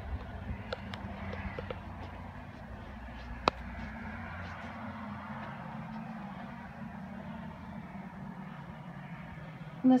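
Steady outdoor background noise with a low rumble, and a single sharp click about three and a half seconds in.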